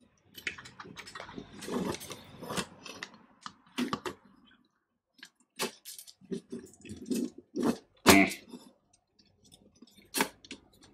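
Plastic fan frames and a metal radiator being handled and pressed together: irregular clicks, knocks and scraping. The first few seconds are a denser run of rustling and scraping, then separate sharp clicks follow, the loudest about eight seconds in.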